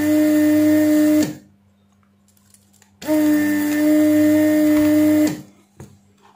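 Vacuum pump of a Weller desoldering iron running with a steady hum and hiss as it sucks solder from the leads of an open fuse resistor on a car stereo board. One run stops about a second in, and a second run of about two seconds starts a few seconds in.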